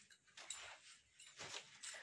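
Faint rustling of handled cloth: a few short, soft rustles.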